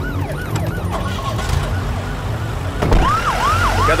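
Emergency vehicle siren wailing in quick rising-and-falling yelps, about three a second, over a low engine rumble. It fades in the middle, a single thump sounds near the end, and then the siren comes back louder.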